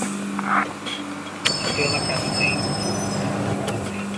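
Sound-collage music built from field recordings: a steady low hum, joined about a second and a half in by a sudden wash of noise with several thin, high, steady tones over it.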